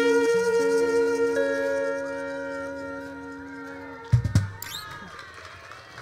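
A band's closing chord with trumpet, held and fading away over about four seconds, followed by a couple of low thumps.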